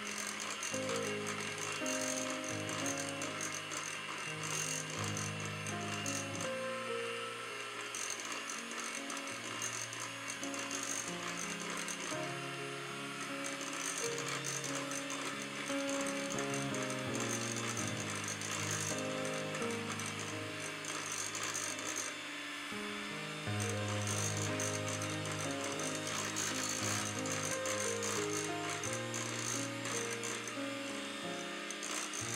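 Electric hand mixer running in a glass bowl, its steel beaters rattling against the glass as they beat egg into creamed butter and cream cheese. Background music plays throughout, as loud as the mixer.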